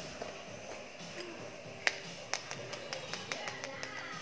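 Light clicks and taps of plastic toy ponies being handled and set down on a tile floor: one sharper click near the middle and a quick run of small ticks toward the end, over faint background music.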